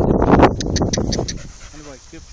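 Young black collie sheepdog whining briefly near the end, after loud rustling and knocks close to the microphone.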